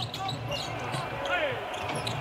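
Live court sound of a basketball game: a ball bouncing on the hardwood floor and faint calls from players, over a steady low hum.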